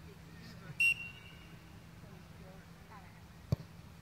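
A referee's whistle blows once, short and shrill, about a second in, signalling the free kick. Near the end there is a single sharp knock as the ball is struck. Faint distant voices sit underneath.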